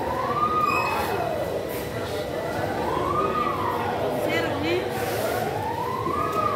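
A siren wailing in slow rising and falling sweeps, about one every three seconds, over background voices.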